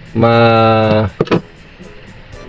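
A man's voice holding one long, drawn-out syllable, then low background room sound.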